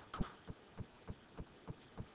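Faint, regular ticking, about three ticks a second, with a short hiss just after the start.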